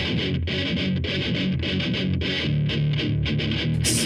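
Alternative rock recording at a quieter break: the drums and heavy bass drop out and an electric guitar with effects plays on its own in a quick, rhythmic picked pattern.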